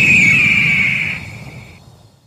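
Bird-of-prey screech sound effect: one long, high cry that falls slightly in pitch over a low rumble, fading out near the end.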